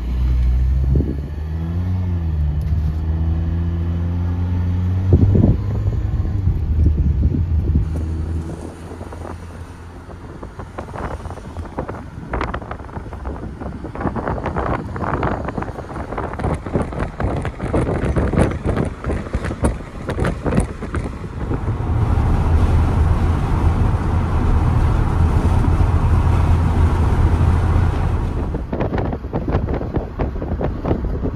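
Car road and engine noise, a steady low rumble with a short gliding hum in the first seconds, and wind buffeting the microphone in the middle stretch.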